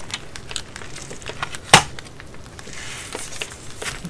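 Hands handling stationery and its packaging: scattered light clicks and rustles, with one sharp click a little under two seconds in.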